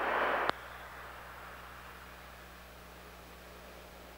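A short rush of hiss that cuts off with a click about half a second in, followed by faint steady hiss and low hum.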